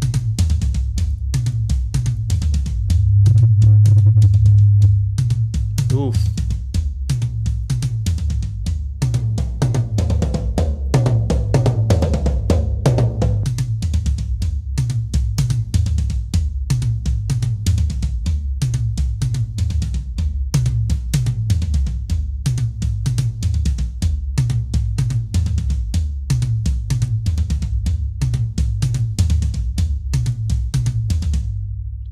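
Recorded acoustic drum kit playing back in a mix, a steady run of hits with the toms under EQ and trimmed sustain. A low tom rings loudest about three to five seconds in.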